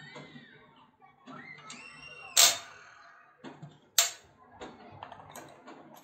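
Metal hardware clicking: two sharp clicks about a second and a half apart, then a few lighter ones, as bolts and an Allen key are handled against the iron rim plate and the glass tabletop.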